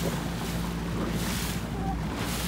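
Boat motor running at a steady low hum under wind buffeting the microphone and water rushing past the hull.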